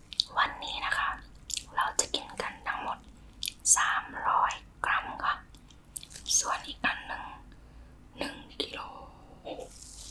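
Close-miked chewing of raw salmon sashimi, with sharp wet clicks and mouth smacks. Short soft whispers come in between the mouthfuls.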